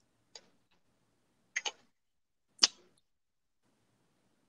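Sharp clicks of small hard objects being handled: a single click, then a quick double click a little over a second later, then one louder click.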